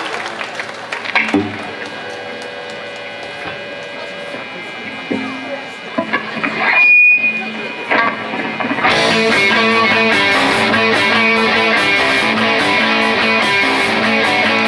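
Live rock band: held electric guitar notes and a few scattered drum hits, then a sudden short break. About nine seconds in, the full band starts a song with electric guitars and drums, loud and steady.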